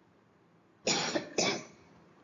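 A person coughing twice, starting about a second in, the two coughs about half a second apart.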